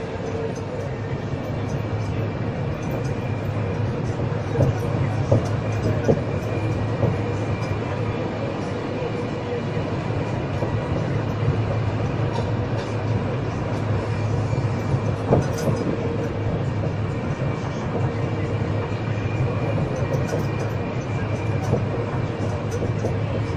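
Dotto tourist road train heard from aboard a carriage: a steady low rumble of its running with a constant whine over it, and a few sharp knocks and rattles from the carriage about five to six seconds in and again around fifteen seconds.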